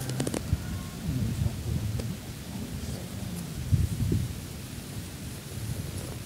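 Wind buffeting the microphone, giving an uneven low rumble, with a few sharp clicks just at the start.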